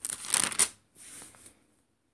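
A brief rustling noise, then a fainter one about a second in.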